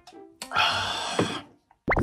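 A sip slurped from an energy drink can, a noisy sucking sound lasting about a second, over light background music.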